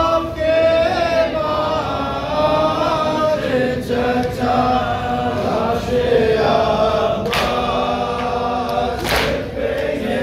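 A group of men chanting a nauha, a Shia lament, in unison, led by reciters on a microphone, on long, wavering held notes. A few sharp slaps cut through the singing, typical of hands striking chests in matam.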